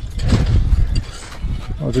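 Wind rumbling and buffeting on the microphone outdoors, heaviest in the first second and easing after; a man's voice starts to speak just at the end.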